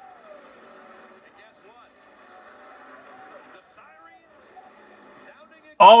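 A NASCAR race broadcast playing faintly from a television: low commentator voices over a steady haze of car noise. A man's exclamation breaks in near the end.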